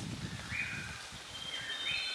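A bird calling: two short whistled notes about a second apart, over a low background rumble that dies away in the first second.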